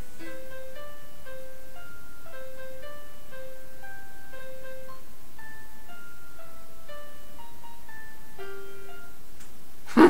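Braille music editor's computer playback of a single-line melody, one note at a time in steady short notes that step up and down, stopping shortly before the end. The user hears a couple of goofs, wrong notes, in it.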